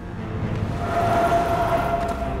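Ominous film score with a rumbling drone: a held tone swells up from about half a second in and eases off near the end.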